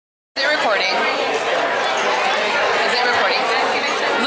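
Busy restaurant dining room: many diners talking at once in a steady hubbub of overlapping voices. The sound drops out completely for a moment right at the start, then the chatter comes back.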